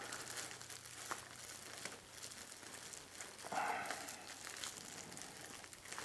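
Plastic bag of hydrostone and water crinkling faintly as gloved hands tie a knot in its neck, a little louder about three and a half seconds in.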